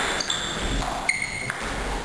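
Table tennis rally: the celluloid ball knocking back and forth off the bats and table, with several short high-pitched ringing tones.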